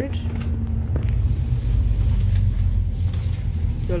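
Bus engine and road rumble heard from inside the passenger cabin, a steady low drone, with a single click about a second in.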